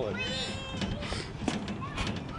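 A brief high-pitched squeal, about half a second long, rising and then falling in pitch, over a low steady rumble of wind.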